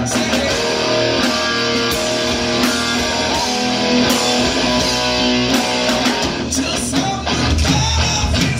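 Live rock band playing loud: electric guitar and bass through Marshall amplifiers with a drum kit. Held guitar chords ring through the middle, and the drumming grows busier again near the end.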